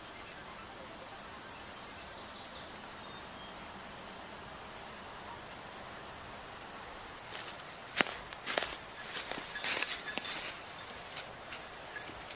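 Forest ambience: a steady hiss with a faint high bird call about a second in. From about seven seconds in comes a run of sharp crackles and knocks, the loudest near eight seconds.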